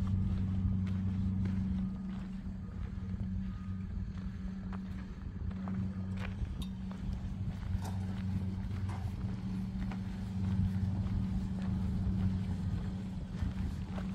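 Footsteps on a gravel path, short scattered crunches a few times a second, over a steady low hum that is the loudest sound.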